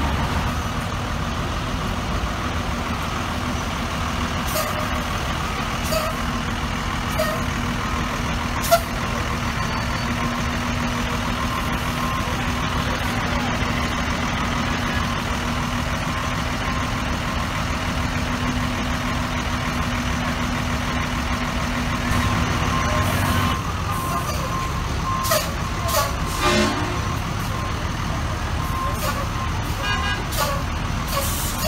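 Diesel engines of heavy fire apparatus, a fire department bus and truck, running with a steady drone. The drone's held tone stops about two-thirds through. Over the last third a reversing alarm beeps repeatedly.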